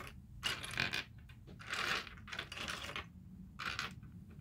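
Small plastic Barbie miniature kitchen pieces clicking and clattering against each other as they are picked out of a pile by hand, a string of light, irregular clicks with a longer rattle about two seconds in.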